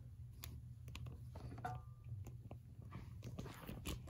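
Handling noise as a small camera tripod is picked up and moved: faint scattered clicks and rubbing over a low steady hum.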